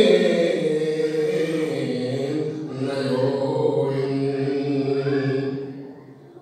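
A man's voice chanting a manqabat, a devotional poem, into a microphone, drawing out long, steady held notes. The line trails off near the end.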